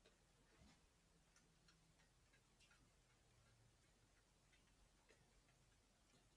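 Near silence: room tone with faint, irregular ticks of a paintbrush dabbing paint onto paper.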